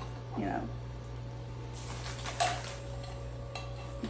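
A brief rustle and a single clink of kitchenware being handled on a countertop about two and a half seconds in, over a steady low hum.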